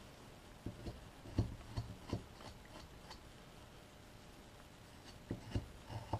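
Carving knife making small slicing V-cuts into a wooden figure: faint, scattered short scrapes and ticks of the blade, several in the first two seconds and a couple more near the end.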